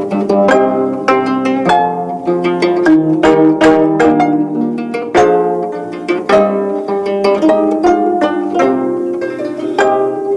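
A quartet of 25-string gayageum (Korean zithers) playing together: quick plucked notes, several a second, ringing over lower sustained notes.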